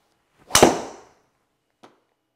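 Golf driver striking a ball on a full swing: one sharp crack about half a second in that rings out briefly. A faint click follows near the end.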